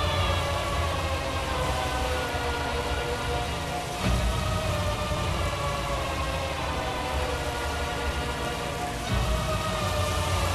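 Dramatic film score of sustained, slowly falling chords, with deep swells about four and nine seconds in, over the steady hiss of fuel spraying from a petrol-pump hose.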